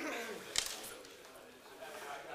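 A single sharp snap about half a second in, over faint voices murmuring in the background.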